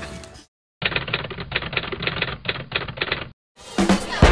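A short, muffled clip of rapid, irregular clicking, like keys being struck, that starts and stops abruptly, with a moment of silence before and after.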